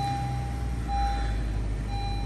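Honda CR-V's four-cylinder engine idling just after start-up, heard from inside the cabin. A single-pitched warning chime beeps about once a second over it, with the driver's door open.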